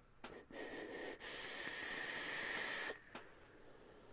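A long draw on a tube vape mod: a steady hiss of air pulled through the atomizer for nearly two seconds, with a faint thin whistle, cutting off abruptly, then a small click.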